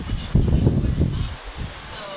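Close-miked mouth sounds of someone chewing fried chicken and rice, a loud irregular low sound that eases off near the end.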